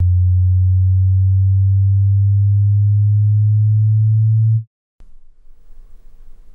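A loud, steady, deep electronic tone, one low pitch held without change, that cuts off abruptly after about four and a half seconds. A moment of dead silence follows, then faint room tone.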